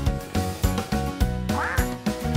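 Background cartoon music with a steady bass beat, and near the end a single cartoon duck quack.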